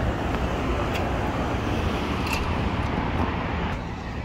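Steady road traffic noise from passing cars, a continuous low rumble with hiss, easing slightly near the end.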